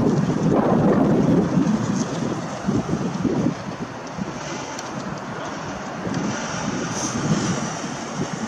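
Low rumble of vehicle traffic passing close by, mixed with wind buffeting the microphone. It is loudest in the first second or so, then settles to a lower steady level.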